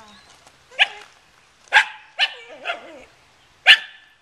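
Welsh Terrier puppy barking: five short, sharp, high yapping barks a second or less apart, the second and the last the loudest.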